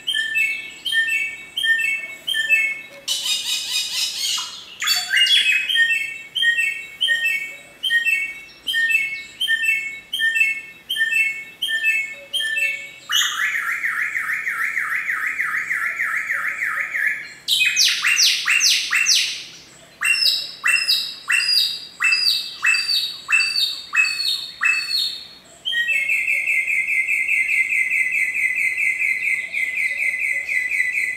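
Bare-throated whistler (samyong, kancilan flores) singing a loud, varied song: repeated whistled phrases about two a second, then fast rattling trills, a run of loud falling notes, and a steady fast trill near the end.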